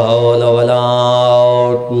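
A man's voice chanting a religious recitation into a microphone, drawing the notes out long in a melodic, wavering line, with a brief break near the end.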